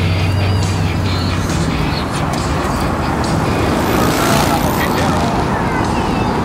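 Street noise from city traffic, steady throughout, with a low hum in the first second or so and indistinct voices in the background.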